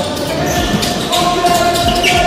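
A basketball bouncing on a wooden gym floor, several knocks echoing in a large hall, with voices talking in the background.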